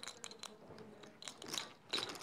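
Poker chips clicking as players handle and riffle them at the table: a run of quick, sharp clicks, busier near the end.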